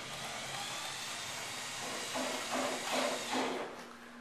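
Small electric drive motor of an observatory dome's shutter relay running, a hissing whir over a steady low hum, as the relay switches come up onto their stops. The hiss is even at first and turns uneven and surging in the second half.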